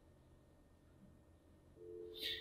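Near silence: a faint low hum, with a faint steady two-note tone coming in just before the end.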